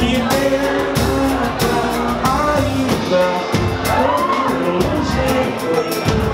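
Live pagode: a male lead singer sings over a band of Brazilian hand percussion and cavaquinho, with the drums keeping a steady samba rhythm.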